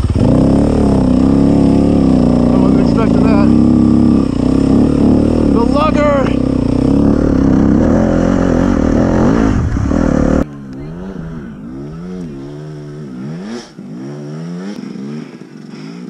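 Dirt bike engine running at low revs in a high gear, lugging slowly up a slick muddy trail. About ten seconds in the sound cuts suddenly to a quieter, more distant dirt bike engine revving up and down repeatedly as it climbs.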